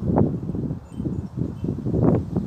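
Wind gusting over the microphone in uneven rushes.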